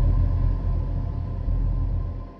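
Deep, low rumbling drone with a thin steady tone above it, a sound-design logo intro effect; it begins to fade away at the very end.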